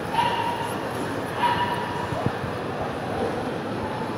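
A dog giving two short, high yaps a little over a second apart, over a background murmur of voices in a hall.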